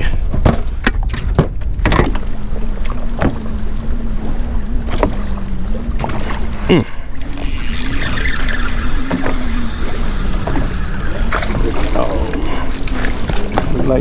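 Electric bow-mount trolling motor humming steadily, holding the boat on spot-lock, with wind buffeting the microphone and a few sharp knocks of handling in the boat.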